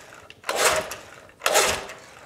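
Recoil starter cord of a Johnson 6 hp two-stroke twin outboard pulled twice, about a second apart, each pull a short burst of about half a second. The engine is cranked over without firing, its spark plug leads off, to pump up a compression gauge on the second cylinder.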